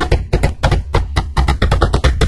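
Fast drumming in a soundtrack: a quick run of sharp percussive hits, about eight a second.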